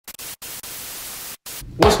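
Television static hiss, even and bright, with a couple of brief dropouts. It cuts off about a second and a half in, and a man starts speaking just before the end.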